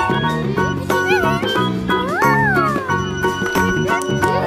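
Children's cartoon music with meow-like cat calls laid over it: a short wavering call about a second in, then a longer call that rises and falls a little past the middle.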